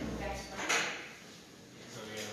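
A low thump, then a brief scrape about two-thirds of a second in: handling noise in a hall.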